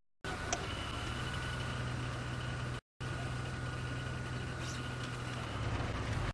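Open safari vehicle's engine running steadily as it drives, with a faint steady whine above it. The sound cuts out completely twice, briefly just after the start and again about three seconds in: dropouts in a failing live-broadcast signal.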